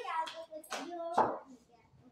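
One sharp, loud knock a little over a second in, with a short ring after it.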